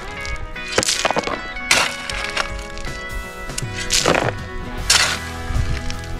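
A steel shovel scraping into a pile of crushed rock and scooping it up, with several sudden gritty strokes of rock on metal, the loudest about one, two, four and five seconds in, over background music.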